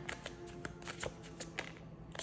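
Oracle cards being shuffled and handled by hand, a string of soft, irregular card flicks as a card is pulled from the deck.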